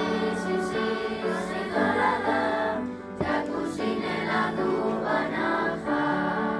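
Children's choir singing, several voices holding notes together, with a short break between phrases about three seconds in.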